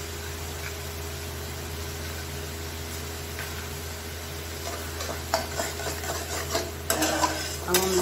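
Flat metal spatula stirring and scraping masala paste and melting butter in a metal kadai, over sizzling and a steady low hum. The scraping strokes start about halfway through and come faster toward the end.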